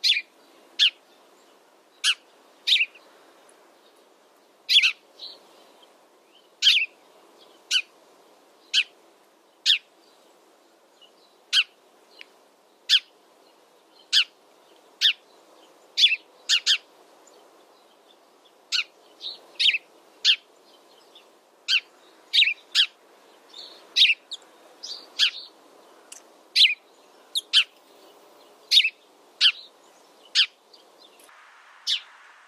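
House sparrow chirping: short, sharp chirps repeated about once a second, some in quick pairs.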